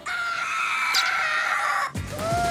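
A cartoon wolf's long scream, held for almost two seconds with its pitch sinking slightly, then cut off abruptly just before the end.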